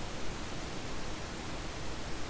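Steady background hiss of the recording: room tone with no distinct sound.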